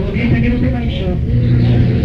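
Lo-fi live recording of a band playing, with a dense, muddy low end and a voice shouting over it.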